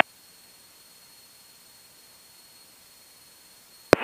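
Faint steady hiss of a headset intercom recording between radio transmissions, with a faint high steady tone underneath. A click near the end as the next transmission keys in.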